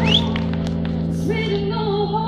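A woman singing live over two acoustic guitars holding ringing chords. Her voice comes in about a second in on a long note with vibrato.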